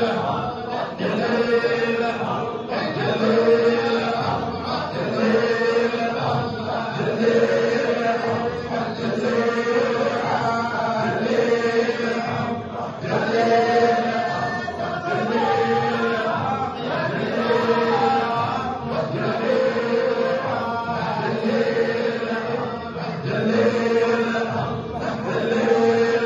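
A group of men chanting dhikr together in a Sufi hadra, repeating a short phrase over and over in a steady, regular rhythm.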